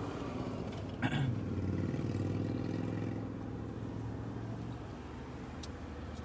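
Small Mazda car's engine heard from inside the cabin, running under load with a steady drone that eases near the end. There is a short sharp sound about a second in.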